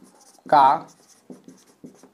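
Marker pen writing on a whiteboard: a run of short, faint strokes as a word is written out.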